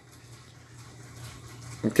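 Quiet room tone with a faint steady low hum; a man's voice starts a word right at the end.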